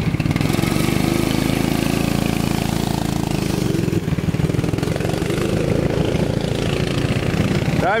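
Go-kart engines running steadily as karts drive past on the track.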